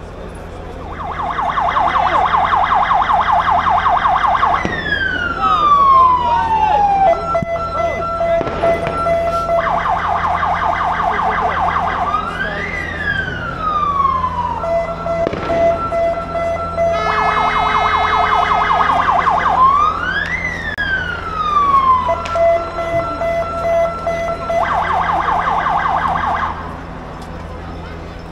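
Ambulance siren, loud, starting about a second in and cycling through its modes: a fast warble, a long falling wail, a steady hi-lo two-tone, and a rising-and-falling sweep, repeated in turn. It cuts off about a second and a half before the end.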